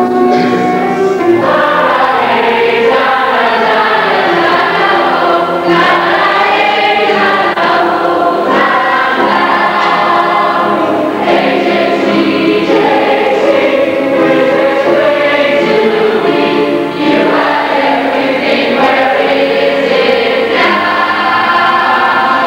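A mixed chorus of teenage voices singing together, sustained and continuous, as a group rehearsing a stage musical's choral number.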